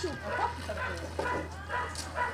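Indistinct voices in short, broken snatches, over a low steady hum.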